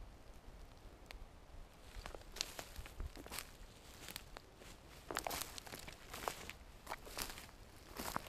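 Footsteps crunching and crackling through dry grass and leaf litter, irregular short crackles that begin about two seconds in.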